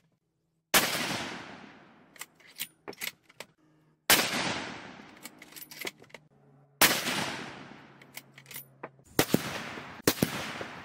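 Three shots from a .243 Winchester bolt-action rifle, a few seconds apart, each a sharp report followed by a long fading echo, with short clicks of the bolt being worked between shots. Near the end, a further sharp report.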